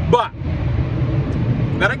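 Steady low rumble of a vehicle's engine idling, heard from inside the cab. A short vocal sound comes just after the start, and speech begins near the end.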